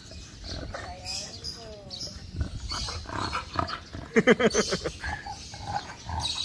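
Dogs vocalizing at close range: short whines rising and falling in pitch about a second in, then a louder, pulsed, buzzy call a little after four seconds.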